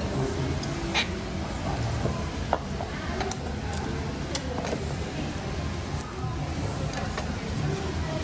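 A few light, sharp clicks and knocks of a glass perfume bottle being handled on a counter, the loudest about a second in and again about two and a half seconds in, over a low steady murmur of background voices and room noise.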